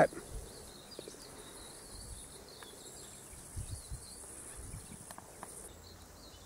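Faint garden ambience of insects giving a steady high-pitched drone that cuts off near the end, with a few soft low thumps partway through.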